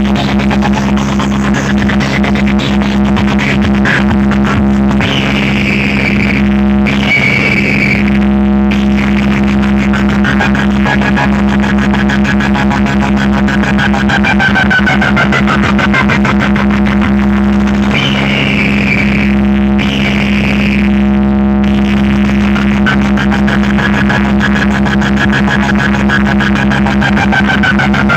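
Loud music played through a large stacked DJ speaker-box setup: a steady deep drone held throughout, with higher sweeping tones laid over it twice and brief breaks in the sound now and then.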